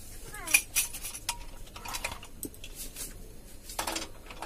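Metal cooking pots and utensils clinking and knocking as they are handled on a gas stove: a string of short, sharp clinks and taps, with a little ringing after some of them.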